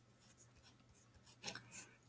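Faint scratching of a pen tip writing on paper, a few short strokes in the second half, over a low steady hum.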